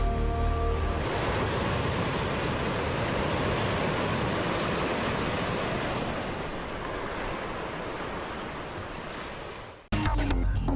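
A TV channel ident's sound design: a music sting ends about a second in, then a steady rushing noise like ocean surf plays. It fades slowly over the last few seconds and cuts off suddenly just before the end.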